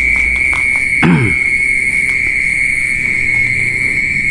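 Steady, unbroken high-pitched trilling of night insects such as crickets in dense vegetation. About a second in, a short falling vocal sound.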